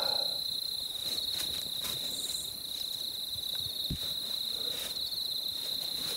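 Crickets trilling in a steady, high-pitched night chorus, with a soft low thump about four seconds in.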